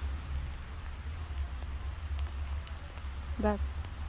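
Rain falling: an even hiss with faint scattered ticks of drops, over a steady low rumble.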